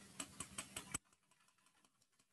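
Faint quick ticks, about five a second, of ice shifting in a metal cocktail shaker as the drink is poured through a fine mesh strainer. The ticks cut off to near silence about a second in.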